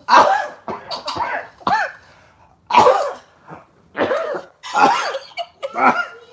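A man coughing hard, a series of about seven loud coughs roughly a second apart.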